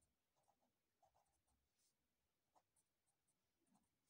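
Very faint scratching of a felt-tip marker writing letters, a scatter of short strokes close to silence.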